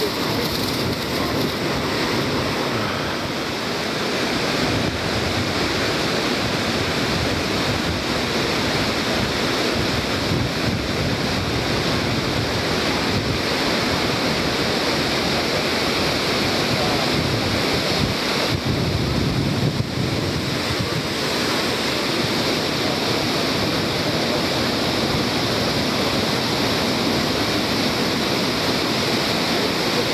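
Devil's Throat (Garganta del Diablo) cataract of Iguazu Falls: the steady rush of a huge volume of falling water.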